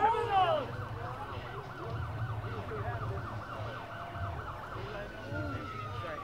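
Police car siren going in a rapid yelp, switching near the end to a slow wail that falls in pitch. Voices are shouting in the first moment.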